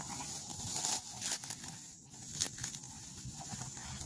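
Dry grass rustling and crackling as it is handled and gathered by hand into a bundle, loudest about a second in.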